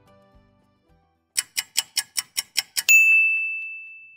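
Logo sound effect: eight quick ticks, about five a second, then a single bright ding that rings out and fades over about a second and a half.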